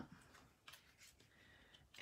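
Near silence, with a couple of faint, brief rustles or taps of paper and card stock being handled.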